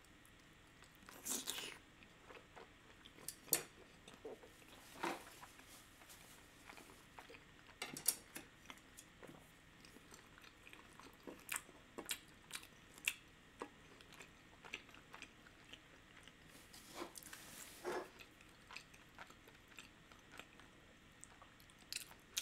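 Faint, irregular chewing and mouth clicks from a whole soup dumpling (xiao long bao) eaten in one bite, with a few louder smacks scattered through.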